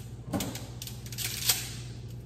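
Dry fettuccine being handled over a pot: a series of light clicks and rattles as the stiff strands knock against each other and the pot, with a small cluster near the start and another after about a second.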